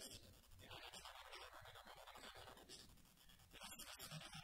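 Near silence: faint hiss and scratchy room tone.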